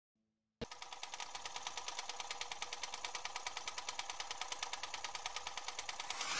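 Faint, rapid, evenly spaced clicking, about ten clicks a second, starting just over half a second in.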